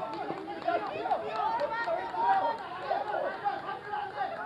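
Several voices calling and chattering over one another: baseball players' chatter on the field.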